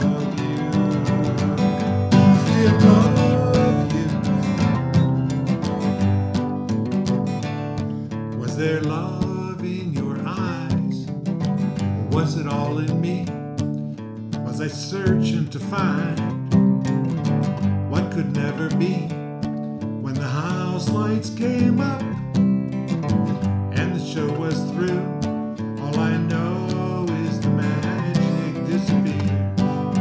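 Acoustic guitar strummed steadily, with a man's voice singing along at intervals.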